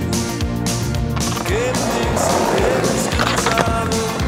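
Skateboard wheels rolling over pavement, under a music soundtrack with a steady beat.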